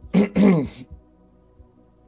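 A man clearing his throat in two quick rasps, the second one longer.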